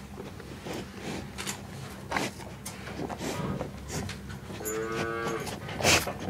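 A Holstein cow gives one short moo about five seconds in. Scattered knocks and rattles sound throughout, the loudest just before the end.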